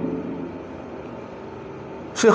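A pause in a man's speech: a steady, low hum and hiss of room noise. His voice trails off at the very start.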